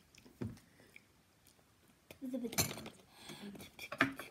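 A metal spoon clinking lightly a couple of times, with a short murmured voice sound about halfway through.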